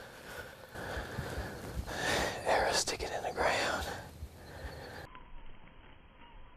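A man's heavy, shaky breathing and whispering just after shooting a deer with his bow, strongest between about two and four seconds in. About five seconds in the sound cuts to a quieter background with a faint steady tone.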